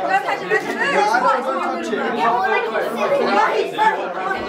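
A group of people chattering, several voices talking over one another with no words standing out.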